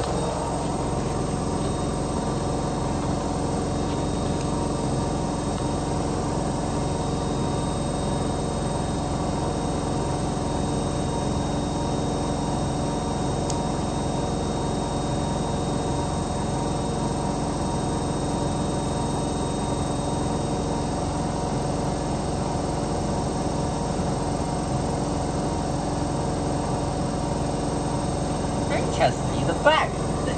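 Zanussi ZWT71401WA washer-dryer on its 1400 spin with a load of soaking-wet towels: a steady motor whine over a low hum, holding an even speed throughout.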